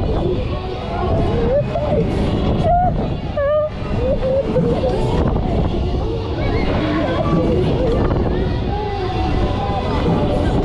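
Miami-style fairground ride in motion, with a steady loud rumble of air rushing past the microphone. Voices ring out over it.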